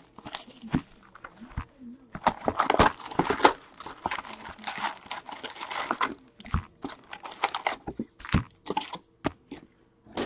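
Clear plastic shrink-wrap crinkling and tearing as it is pulled off a cardboard box of hockey card packs, then foil card packs rustling as they are lifted out of the box. A couple of knocks come in the second half.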